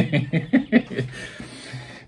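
A man chuckling in a quick run of short bursts that die away after about a second, over faint background music.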